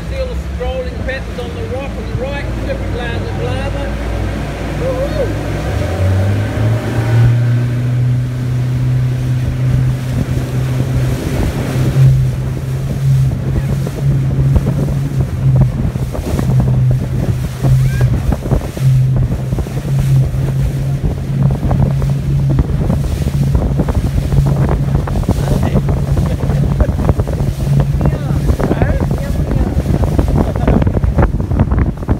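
Motorboat engine running, rising in pitch about six seconds in as the boat speeds up, then holding a steady drone. Wind buffets the microphone and water splashes against the hull.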